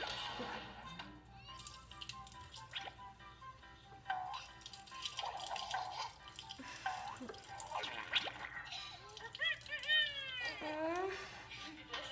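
Music and voices from a funny video played on a phone, ending in a run of quick swooping pitched sounds.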